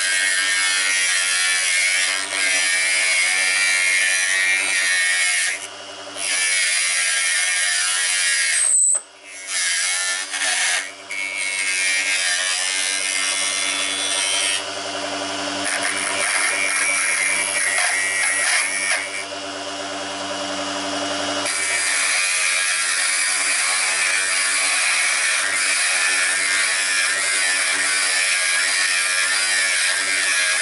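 Mini wood lathe with a small 24 V DC motor running steadily with a hum, while a hand wood chisel cuts the spinning wooden workpiece with a scraping hiss. The cutting noise stops and starts several times as the chisel is lifted and set back on the wood, with a short break and a brief high squeak about nine seconds in.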